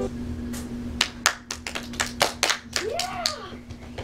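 A small group clapping their hands in quick, uneven claps, with one child's short exclamation rising and falling in pitch about three seconds in, over a faint steady hum.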